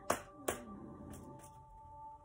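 Two sharp hand clicks at a tarot deck, half a second apart, over faint background music with held tones.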